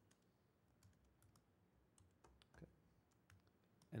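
Near silence: room tone with faint, scattered clicks of typing on a laptop keyboard.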